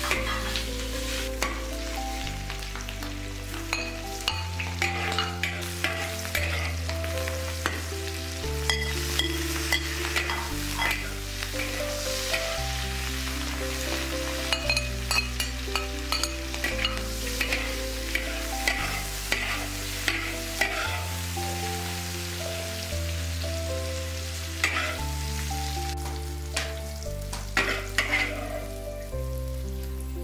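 Stir-frying in a large wok: cured pork and fish mint sizzling in hot fat, with a metal spatula scraping and clicking against the wok many times. The sizzle dies down near the end.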